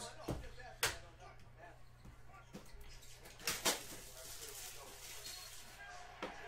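A few sharp knocks and clicks of a cardboard trading-card hobby box being picked up and handled: two near the start and a quick pair about three and a half seconds in, over a low steady hum.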